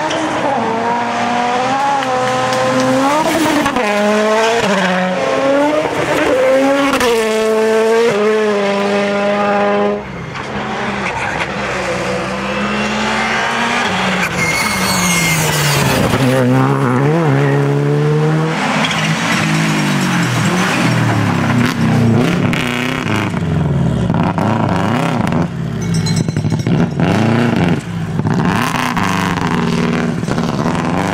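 Rally cars driven flat out past the spectators, one clip after another: engines revving high and dropping back with each gearshift and lift. The sound changes abruptly about ten seconds in as a new car comes by.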